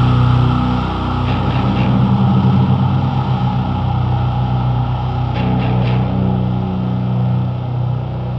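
Atmospheric sludge/post-metal music, heavy and loud, built on low sustained chords.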